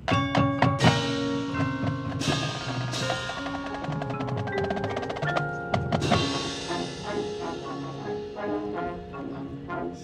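Marching band playing its field show, with struck mallet keyboards and drums from the front ensemble prominent over held notes. The music comes in suddenly at full volume, with several loud accented hits.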